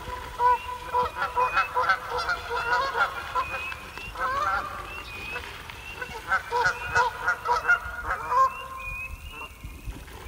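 Geese honking on a pond, many honks in quick succession that thin out near the end. A high, short rising peep repeats about twice a second behind them.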